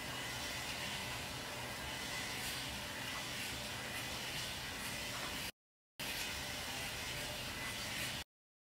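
Steady hiss of background room noise with no clear source, broken by a dropout to dead silence for about half a second a little past halfway.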